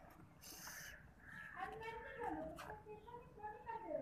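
A faint voice in the background, with pitch that rises and falls and breaks up like talk, beginning about a second and a half in, preceded by a short rustle about half a second in.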